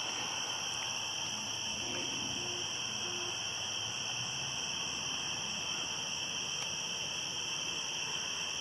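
Steady outdoor night chorus of insects such as crickets, a continuous high trilling hum. A few faint, short, low hooting notes come about two to three seconds in.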